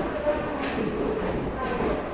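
Express train's coaches running into a station, heard from aboard: a steady wheel and running rumble with a few faint clicks.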